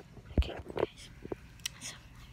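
Quiet whispering with a few small knocks and rustles, typical of a phone being handled close to the microphone.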